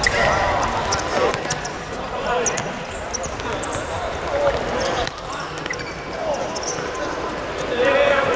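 A football kicked and bouncing on a hard outdoor court: several sharp thuds of ball strikes, mixed with players' shouts.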